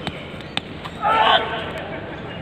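Two sharp knocks about half a second apart, then a brief loud shout.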